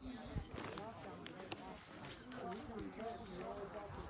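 Faint, indistinct talking, with a few scattered knocks.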